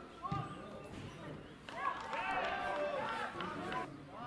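Youth footballers shouting to each other across the pitch, the calls louder and overlapping in the second half. A single dull thud comes just after the start, a football being kicked.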